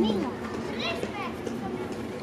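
Children's voices and chatter in the background, with a woman's voice trailing off right at the start.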